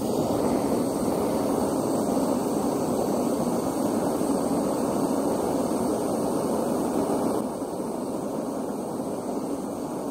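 Handheld gas blowtorch flame burning with a steady rushing hiss, a little quieter about seven and a half seconds in.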